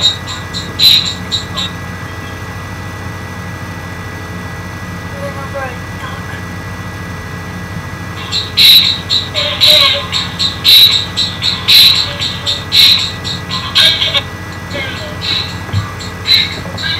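Hip-hop backing beat with a sharp snare-like hit about once a second, dropping out for several seconds in the middle and coming back about halfway through, over a steady low hum. A boy's voice raps along at points.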